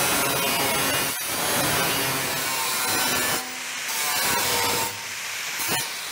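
Angle grinder with a flap disc grinding along the edge of a sheet-metal bonnet, taking down high spots to fair the curve. The sound eases a couple of times, about three and a half and five seconds in, as the disc lightens on the metal.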